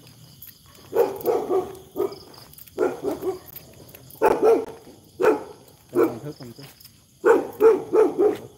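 A dog barking repeatedly, in short runs of two or three barks, with insects chirping steadily and faintly behind.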